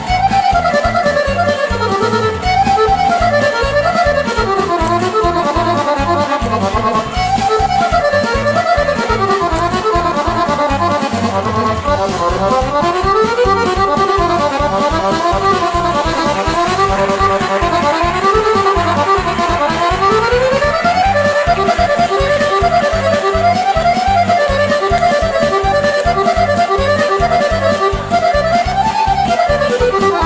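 Accordion playing a fast tune in quick rising and falling runs over a steady rhythmic backing.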